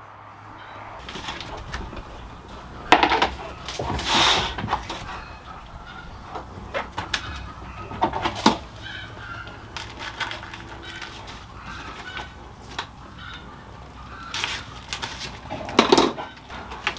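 Handling sounds as raw pork tenderloins are worked on a tray: scattered clicks, knocks and rustles, with a louder rustling burst about three to four seconds in.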